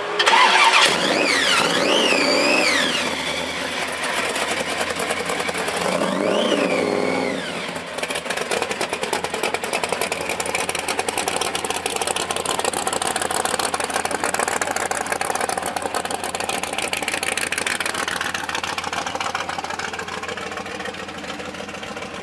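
Supercharged 351 Windsor V8 stroked to 418 cubic inches, in a 1966 Mustang pro-street car, starting with a loud burst about half a second in. It is revved up and back down twice in the first seven seconds, then settles into a steady, rapidly pulsing idle.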